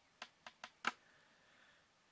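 Four short clicks within about a second, the last one loudest, followed by a faint, brief thin tone.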